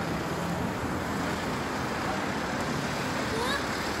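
Steady hum of road traffic in the street, even and unbroken.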